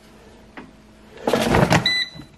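Air fryer basket sliding along its housing: a rough scraping rush lasting under a second, followed near the end by a short high beep.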